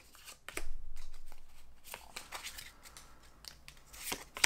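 A stack of Pokémon trading cards being slid out of an opened booster pack and handled: quick scrapes and light snaps of cardstock, loudest about half a second to a second and a half in, then softer sliding.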